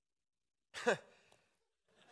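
Silence broken about three-quarters of a second in by one short voiced exhalation from a man at a close microphone, falling steeply in pitch, like a sigh.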